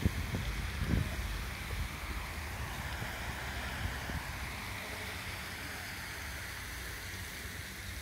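Park fountain jet spraying and splashing into its pond: a steady hiss of falling water. Low wind rumble on the microphone runs underneath, heavier in the first second.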